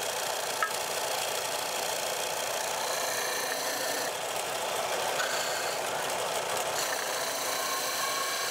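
Harbor Freight combination belt and disc sander running with a piece of cherry pressed hard against its 6-inch sanding disc: a steady abrasive hiss of grit on wood over the motor. The motor holds its speed under the hard pressure without stalling.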